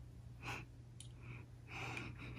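Faint breathing in through the nose: a short puff about half a second in, then softer breaths near the end, with a small click about a second in.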